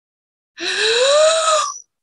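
A woman's breathy, voiced gasp of fright, just over a second long, rising in pitch and then easing slightly before it stops.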